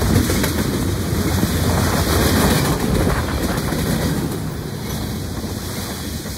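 Freight cars of a Norfolk Southern train rolling past at speed close by: a loud, steady rumble of steel wheels on rail with a rapid rattling clatter, easing a little near the end.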